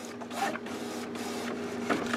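HP Officejet Pro 8600 inkjet printer running as it feeds out an alignment page: a steady motor hum with faint mechanical whirring.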